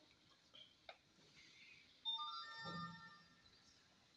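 A faint, brief run of electronic tones: several steady notes at different pitches begin about two seconds in and die away after about a second.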